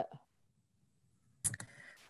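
About a second of complete silence on the call line, then a single sharp click about one and a half seconds in, followed by faint room noise.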